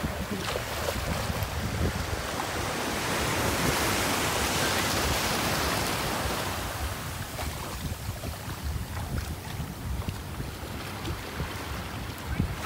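Small surf waves washing in and foaming around the shallows, with wind rumbling on the microphone. The wash swells fuller for a few seconds near the start and eases off in the second half.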